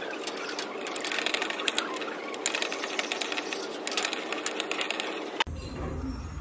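Pestle grinding and scraping in a porcelain mortar while a magnesium trisilicate mixture is compounded: a rapid, gritty run of clicks and scrapes. It breaks off abruptly near the end.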